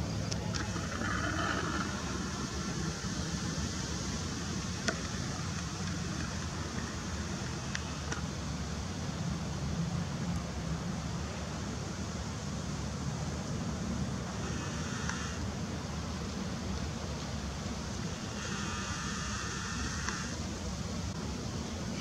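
Steady low outdoor background rumble, with a few brief faint higher sounds now and then.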